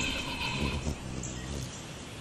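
High-pitched hummingbird chirping that fades out within the first half-second, over a low hum.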